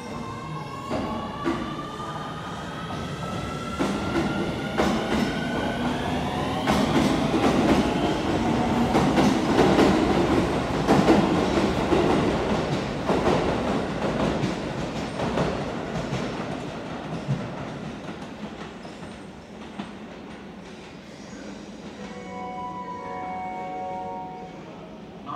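Keio Line electric train pulling away: its inverter traction motors whine in several tones that rise steadily over the first six seconds or so. The wheels then clatter over rail joints as it gathers speed, and the sound fades as it leaves. A few steady tones sound near the end.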